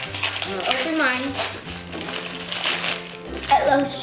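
Children's voices exclaiming and chattering without clear words, over background music with a steady bass line.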